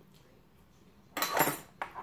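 Metal fork scraping and clinking against a ceramic plate, starting suddenly about a second in, with a second shorter clink just after.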